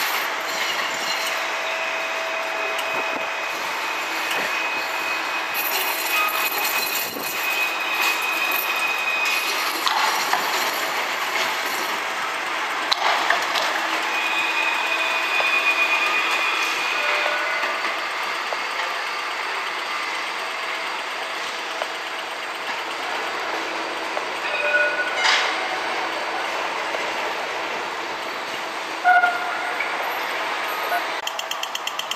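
Electric city tram running on street track amid traffic noise, with long steady high squeals from the wheels at times. A few short knocks come near the end.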